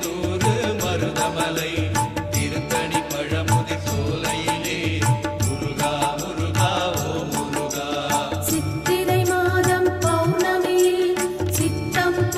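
Murugan devotional music of the kind played for Cavadee, with a steady repeating drum beat under a melody; about two-thirds of the way through the arrangement shifts to longer held notes.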